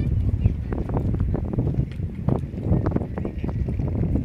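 Wind buffeting the microphone, a steady low rumble with scattered faint knocks.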